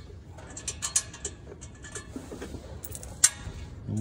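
Light clicks and scrapes of nuts being unscrewed by hand from a metal engine cover plate, with one sharp click a little past three seconds in.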